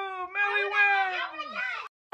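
A child's high-pitched squeal, held and slowly falling, then breaking into shorter wavering squeals that trail off and cut out abruptly near the end.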